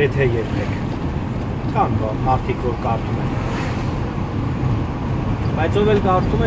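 Steady engine and road noise heard from inside a moving vehicle, with a few short snatches of someone speaking.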